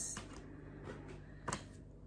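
Faint steady room hum with one soft click about one and a half seconds in, from tarot card decks being handled.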